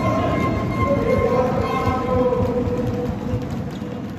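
Supporters' horns sounding long steady notes over crowd noise and a fast, pulsing drumbeat in a large hall, fading down near the end.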